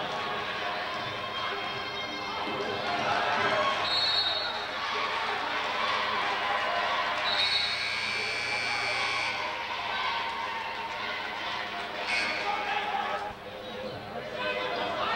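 Basketball dribbled on a hardwood gym floor during live play, amid the chatter of spectators in the gym.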